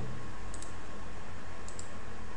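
Two quick double clicks of a computer mouse, about half a second in and near the end, over a steady low electrical hum.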